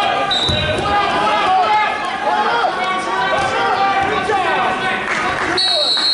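Overlapping shouting from coaches and spectators echoing in a gymnasium during a wrestling bout, with a low thud about half a second in. Two short, steady high whistle blasts sound, one near the start and one at the end.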